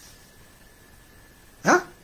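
A single short, loud bark-like vocal sound, sweeping down in pitch, near the end of a quiet stretch of room tone with a faint steady high tone.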